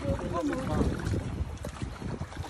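Water sloshing against the hull of a small outrigger boat as a swimmer in the water holds on at its side, with a low rumble of wind on the microphone. A brief voice sounds in the first second.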